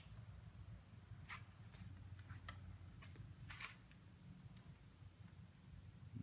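Near silence: a low steady room hum with a handful of faint, irregular clicks and soft knocks. These come from the wooden kinetic sculpture turning on its pivots.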